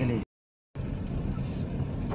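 Car driving on an unpaved dirt road, heard from inside the cabin: a steady low rumble of engine and tyre noise. Near the start the sound drops out for about half a second of dead silence, then the rumble resumes.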